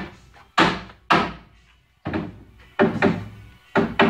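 Hammer blows on wooden wall boards and studs: about six heavy knocks, irregularly spaced half a second to a second apart, each dying away quickly.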